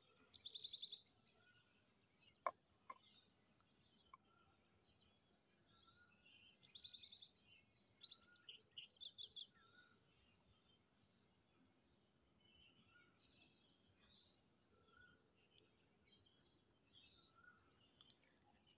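Faint birds chirping, with two bursts of rapid trilled chirps, about a second in and again around eight seconds in, and scattered short chirps between. A single sharp click comes about two and a half seconds in.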